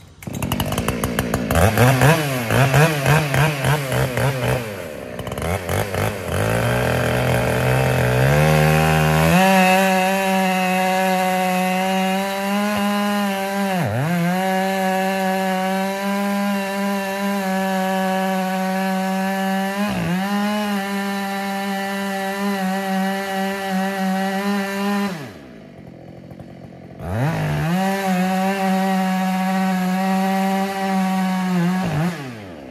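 Chainsaw cutting through a poplar trunk during felling. It revs unevenly at first, then runs at steady full throttle, with the pitch dipping sharply twice. Near the end it drops to idle for about two seconds, then revs back up.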